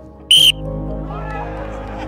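A referee's whistle blown once, a short sharp blast about a third of a second in, signalling the start of a five-a-side football game. Background music and voices follow.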